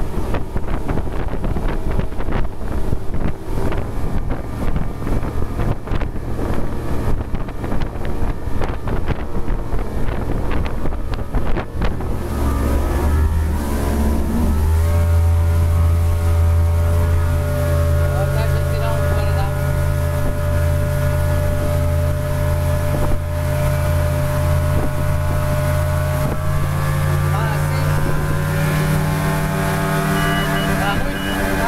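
Mercury Optimax 150 two-stroke V6 outboard running at a steady cruising speed with the boat under way. For the first dozen seconds wind buffets the microphone over the engine and water noise. After that the engine's steady droning tone comes through clearly and holds to the end.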